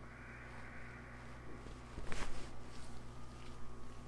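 Chiropractic towel neck pull: a slow breath out, then about two seconds in a short, rough crackling burst as the neck is pulled, the kind of joint cracking these adjustments aim for, followed by a thump at the very end.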